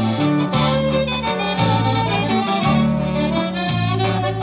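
Norteño conjunto music in an instrumental break of a corrido: accordion and saxophone carry the melody over bajo sexto and bass keeping a steady polka beat.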